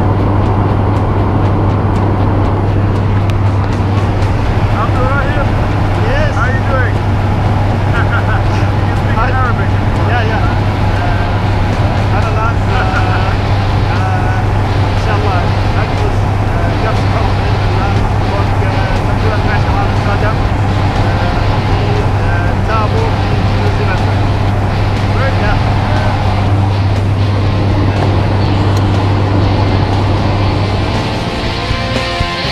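Steady, loud drone of a light aircraft's engine and propeller heard inside the cabin, with a constant low hum, and voices under it.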